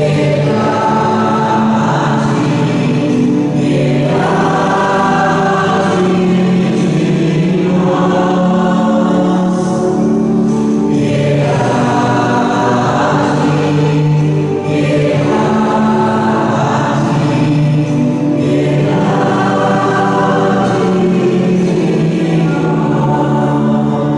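A church choir singing a hymn in phrases a few seconds long, over a sustained low accompaniment that continues between the phrases.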